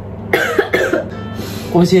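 A person coughing briefly, a few quick coughs within the first second.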